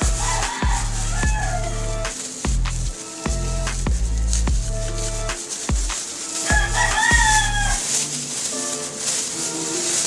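A rooster crows about half a second in and again near seven seconds, each crow a falling call just over a second long, over background music with a steady beat.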